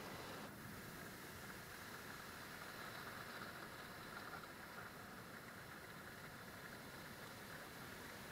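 Ocean surf breaking on a sandy beach, heard as a faint, steady, even wash.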